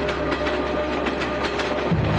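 Passenger train running, its wheels clattering over the rail joints in a quick, even rhythm over a steady low rumble.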